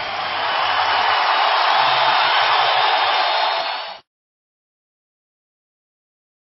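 A dense, steady rushing noise with no clear pitch, which cuts off suddenly about four seconds in and is followed by silence.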